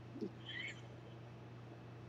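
A quiet room with a steady low hum. Near the start there is one brief, faint, low hoot-like vocal sound, like a short "hm".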